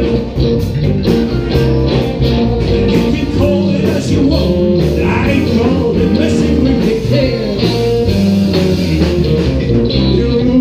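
Live blues-rock band playing: electric guitars, bass and drum kit keeping a steady beat, with a man singing at the microphone.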